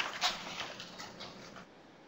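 Faint rustling of paper handout pages being turned, a few soft crinkles in the first second and a half that then fade out.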